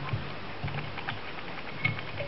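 Faint small clicks and handling noises of hands working a fly on a fly-tying vise, with one slightly sharper click near the end, over a low steady hum.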